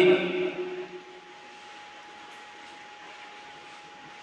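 A man's voice trails off in the first second, then a pause of faint steady hiss with a thin, steady high tone running under it.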